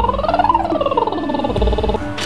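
A woman's voice doing a vocal warm-up siren, one continuous sound sliding up in pitch and then back down.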